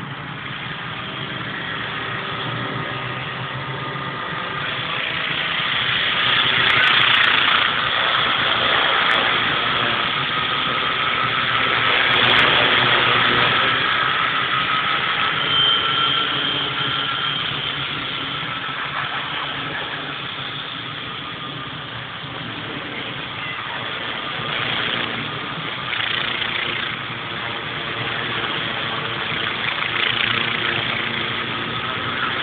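Multiplex FunCopter electric RC helicopter in flight: a steady whine of motor and rotor blades whose pitch drifts slightly. It grows louder twice as the helicopter passes closer, fades, then rises again near the end.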